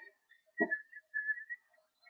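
Faint whistling in short high notes, with a brief low sound about half a second in.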